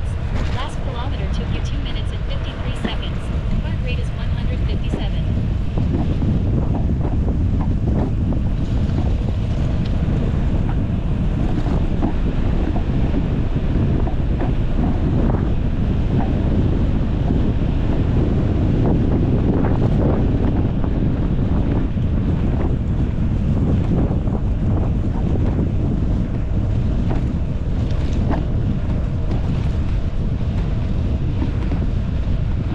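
Wind buffeting the microphone of a handlebar-mounted action camera on a moving road bike, a loud, dense low rumble that grows stronger after about five seconds.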